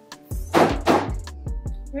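Background music with a steady beat and bass line, with two loud, sharp noisy hits about half a second apart near the middle.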